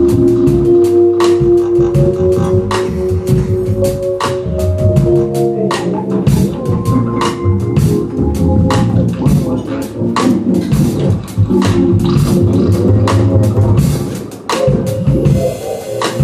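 Live band of keyboards, double bass and drum kit playing: held keyboard chords over a walking bass, with drum and cymbal strikes throughout. The music thins briefly near the end.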